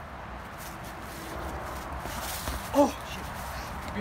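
A single short, pitched vocal call about three-quarters of the way in, rising and then falling in pitch, over a steady outdoor background hiss.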